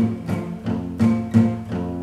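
Acoustic guitar strummed in a steady rhythm, about three strokes a second, with its low bass notes standing out.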